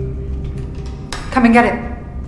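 Film soundtrack: a steady low rumble of background ambience or score, with a short spoken phrase about a second and a half in.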